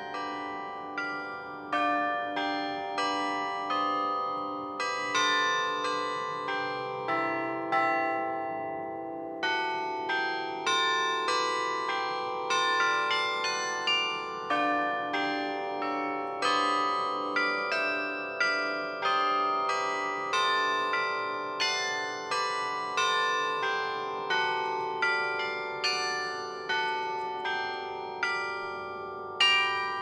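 Carillon bells playing a slow melody, each note struck and left to ring into the next, with a low note repeating steadily beneath in parts.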